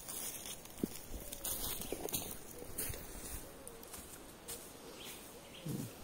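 Footsteps on dry leaf litter: irregular crunching and rustling steps on a forest floor.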